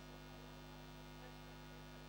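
Steady low electrical mains hum, unchanging throughout, with no music or speech over it.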